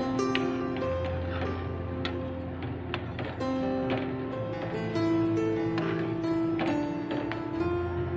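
Instrumental background music with long held notes and short struck notes.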